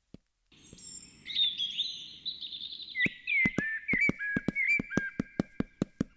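Birds chirping and whistling with short calls that glide up and down, the film's morning ambience. About halfway in, a steady run of quick footfalls joins them, about four or five a second, the pace of jogging feet.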